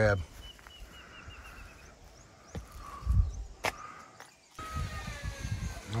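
Whining from construction work, a thin high tone that drifts and wavers in pitch. Two sharp clicks sound about halfway through.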